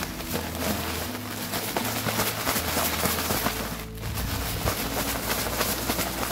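Plastic bag of granular protein supplement (proteinado) shaken by hand to mix in vitamin K2 powder: a dense crinkling of the plastic and rustling of the grains, with a brief pause about four seconds in.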